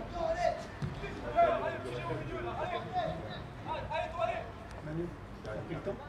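Indistinct men's voices talking and calling out around a football pitch, none of it clear speech.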